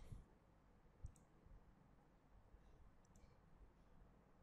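Near silence broken by a few faint computer mouse clicks, one at the start and one about a second in.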